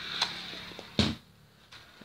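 Toy RC car's small electric motor buzzing for about the first second while being driven from the controller, then stopping. There are two sharp clicks, the louder one about a second in.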